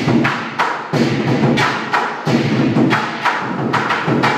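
Lion dance percussion: a big drum beaten with crashing cymbals, the strikes coming about two to three times a second in a driving, uneven rhythm, each cymbal crash ringing on briefly.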